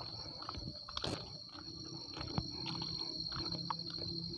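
Insects droning at one steady high pitch, over irregular crunching footsteps on the track ballast. A low steady hum joins about a second and a half in.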